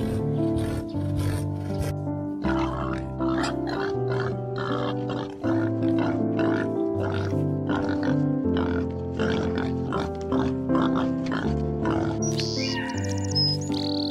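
Background music with held melodic notes, with domestic pigs grunting irregularly over it through most of the middle.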